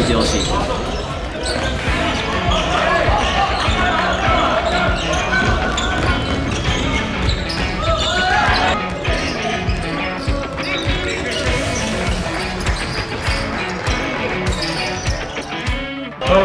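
Indoor basketball game sound: a ball bouncing on a hardwood gym floor and players' voices, under background music.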